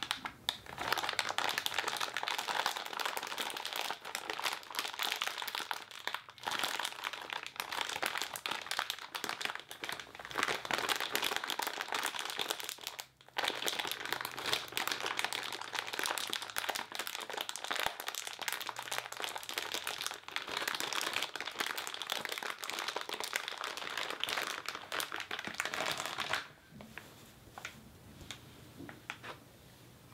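Hands squeezing and crinkling a plastic-wrapped packet of crepe paper: a dense, continuous crackle with one short break about halfway. Near the end it drops to quieter scattered handling sounds.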